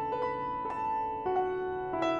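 Kafmann K121 upright acoustic piano playing a slow, improvised Vietnamese quan họ folk melody, one note struck every third to half second and left to ring over a soft accompaniment. The tone is very resonant and bright.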